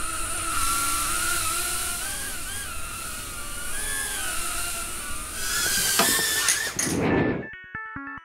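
Micro quadcopter's small brushed motors and propellers whining in flight, the pitch wavering up and down with throttle. Near the end the whine stops and electronic music begins.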